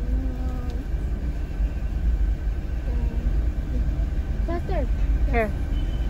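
Steady low rumble of a car heard inside its cabin, the engine idling while stopped to order, with faint voices over it and a brief high voice near the end.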